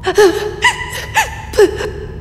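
A woman's frightened gasps: four short, sharp in-breaths with a voiced catch, about half a second apart.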